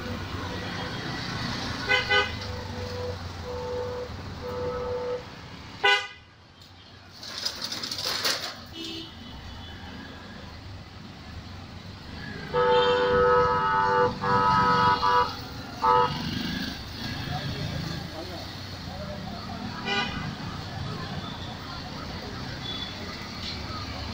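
Road traffic with vehicle horns honking repeatedly: short toots about two seconds in and again around three to five seconds in, then the loudest, a string of longer horn blasts from about twelve and a half to sixteen seconds in, over a steady hum of passing vehicles.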